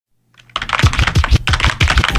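A fast run of sharp percussive clicks, each with a deep thump that drops in pitch, about five a second, starting about half a second in.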